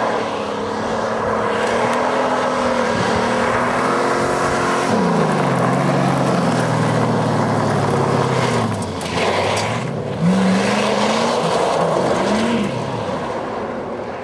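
An old Ford sedan's engine revving hard as the car powerslides on a gravel road, its tyres spinning over loose gravel. The engine note rises and falls, sinks low through the middle, then climbs in two short rises near the end.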